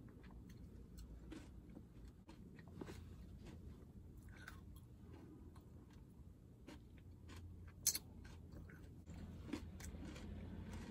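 Quiet chewing of a mouthful of acai bowl, with small scattered clicks throughout and one sharp click about eight seconds in, over a low steady hum.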